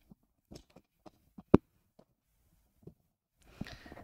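Light plastic clicks and knocks from an Elgato Wave Mic Arm's ball head as it is turned and its release lever tightened, the lever catching on the plastic counterweight. One sharp click about one and a half seconds in stands out from the rest.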